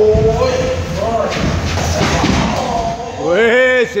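Muay Thai sparring: scattered thuds of kicks and punches landing on bodies and gloves. There is a drawn-out vocal call in the first second, and a man shouts "c'est bien" near the end.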